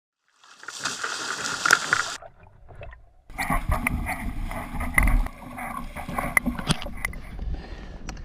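Water splashing and sloshing beside a kayak at sea, with wind buffeting the microphone and scattered knocks against the hull. One noisy burst in the first two seconds, a short lull, then rougher splashing and wind rumble from a little past three seconds on.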